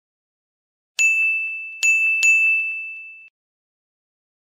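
A bell-like chime sound effect dinging three times, the second and third strikes close together. Each strike rings on one high, clear pitch and fades out.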